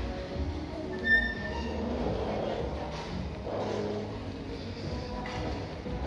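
Background music playing through a large, echoing store, with indistinct voices and a low hum; a short, high beep sounds about a second in.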